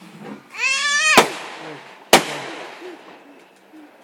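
Two sharp consumer firework bangs about a second apart, the first about a second in. The first comes at the end of a shrill, wavering, slightly rising tone lasting about half a second.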